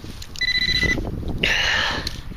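Metal detector signalling a metal target: a steady, high electronic beep lasting about half a second, then a rougher, buzzing tone near the end. Low knocks of soil being handled run underneath.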